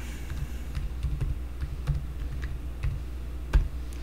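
Computer keyboard being typed on, about ten separate keystrokes entering a password, with one louder click near the end.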